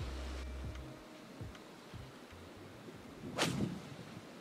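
A 7-iron striking a golf ball off a tee: one sharp crack about three and a half seconds in.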